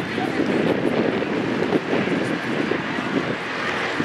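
Steady open-air noise, a rumble with a hiss over it, with indistinct voices of players and spectators in the background.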